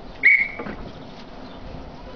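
One short, shrill blast of a hand-blown whistle, a steady high tone lasting about a third of a second: a railway guard's whistle giving the train its signal to start.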